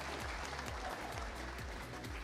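Audience applauding steadily, with soft background music underneath.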